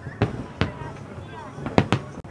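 Aerial firework shells bursting in the distance: a string of sharp booms, about six in two seconds, with the loudest, a quick cluster, near the end, over a constant low rumble from further bursts.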